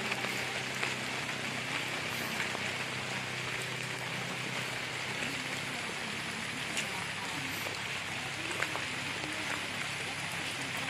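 Light rain falling steadily, an even hiss with a few drop ticks, under faint distant voices.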